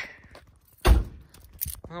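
A car door shut once, a single heavy thud about a second in, followed by a few faint clicks.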